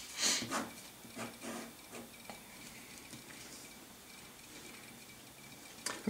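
Felt-tip marker rubbing on paper in several short scratchy strokes while a box is drawn around a written answer, the loudest stroke at the very start; after about two and a half seconds only faint room hiss remains.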